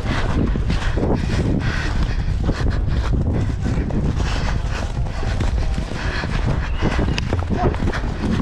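Horse galloping on grass turf, its hoofbeats heard from the saddle over a steady low rumble.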